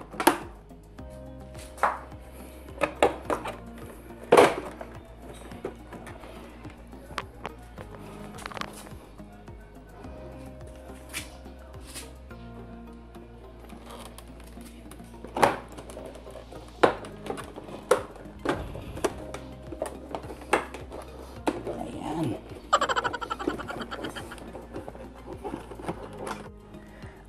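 Plastic front cowl and headlight assembly of a Yamaha Mio i125 scooter being worked back into place by hand, giving repeated sharp knocks and clicks, with a quick run of small clicks near the end. Background music plays underneath.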